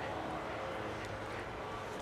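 Steady, low outdoor background noise: an even hiss with a faint low hum and no distinct events.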